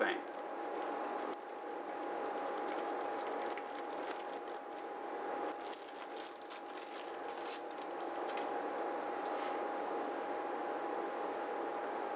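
Cellophane sleeve being crinkled and peeled off a cigar by hand: a scattering of small irregular crackles over a steady hum.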